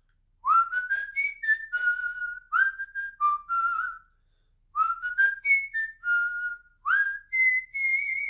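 A person whistling a short tune in two phrases of quick notes, each note sliding up into its pitch. The second phrase ends on a longer held high note.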